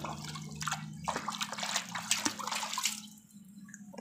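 A hand swishing and sloshing a mud-covered plastic toy around in a bucket of water to wash it clean, with irregular splashing that dies away about three seconds in.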